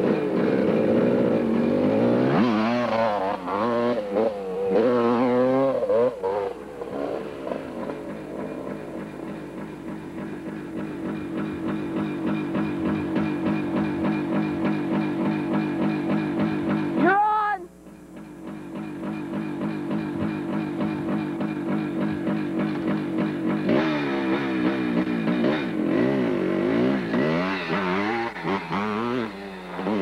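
Yamaha YZ250 two-stroke dirt bike engine, revved up and down repeatedly, steadier through the middle. About halfway through, a quick rising sweep is followed by a sudden break in the sound before the engine picks up again.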